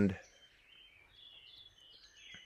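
Faint birds chirping in the background, a few short calls in a quiet pause.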